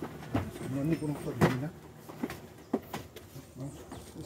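Faint, indistinct voices at a distance from the microphone, with a few short sharp clicks scattered through.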